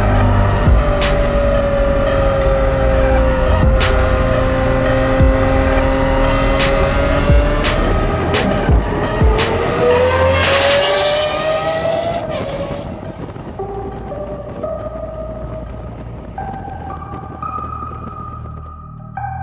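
Lamborghini Aventador SVJ's V12 engine running at speed under a music track, its pitch sagging slightly and then rising as the car accelerates, with sharp clicks over it. About two-thirds through, the engine fades away and only slow electronic synth notes remain.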